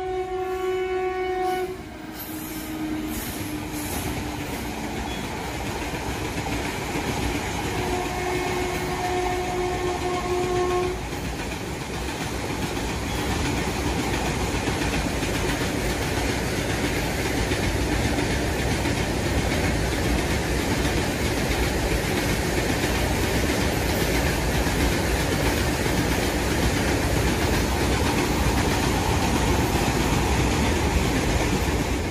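Train sound effect: a train horn sounds until about two seconds in and again for about three seconds starting near eight seconds in, over the continuous running noise of a moving train.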